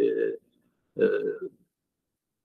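A man's voice: two short, drawn-out hesitation sounds, one right at the start and one about a second in, with silence between and after.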